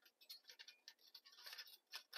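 Faint small ticks and scrapes of thin sheet metal as the slotted side panel of a folding Altoids-tin wood stove is slid into its slot.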